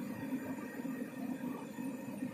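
Quiet room tone: a steady low hum with no distinct sound event.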